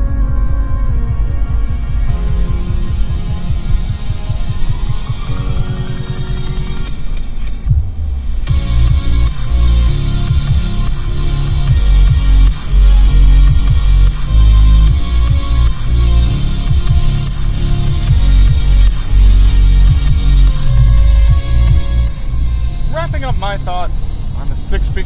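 An electronic music track played through the 2006 Toyota 4Runner's six-speaker base factory stereo, heard inside the cabin. It has a heavy bass beat, and a rising sweep builds into a brief break about eight seconds in before the beat comes back.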